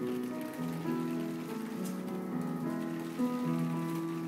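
Solo piano playing a slow melody of held notes.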